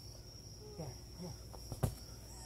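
Crickets chirping in a steady, high-pitched chorus, with a few faint voice sounds in the middle and one sharp smack just before the end, the loudest sound.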